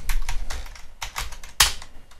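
Typing on a laptop keyboard: an uneven run of key clicks, with one louder stroke about one and a half seconds in.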